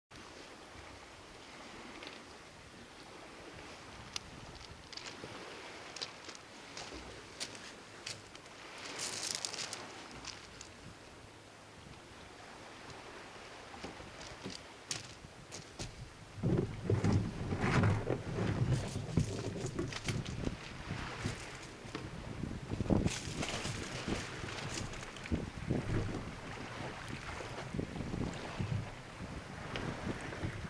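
Wind buffeting a kayak-deck microphone, with scattered clicks at first. From about halfway through come irregular knocks and thumps as a paddler climbs into the sailing kayak and launches it off a stony beach.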